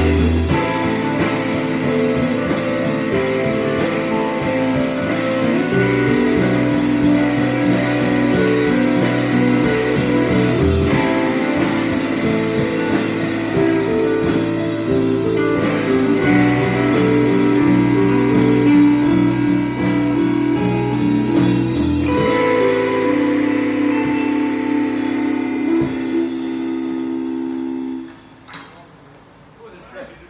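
Live band jam with electric guitars, bass and drum kit playing together. About three quarters of the way in the music settles onto a long held chord, which cuts off a couple of seconds before the end, leaving only faint ringing.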